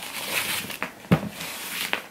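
A satin ribbon being pulled and slid against a cardboard gift box, making a soft rustling, with a single light knock from the box about a second in.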